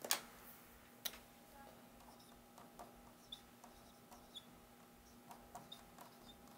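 Faint clicks and ticks of a pen on paper while writing by hand, with two sharper clicks in the first second and lighter scattered ticks after, over a steady low hum.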